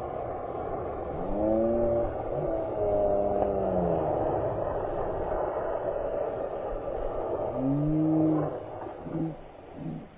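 Plastic wheels of a small ride-on toy fire truck rolling fast down asphalt, a steady rumble, with long drawn-out yells at about one to four seconds in and again near eight seconds, then short shouts near the end.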